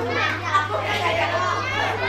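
A crowd of children shouting and chattering with high, excited voices, over a steady low hum.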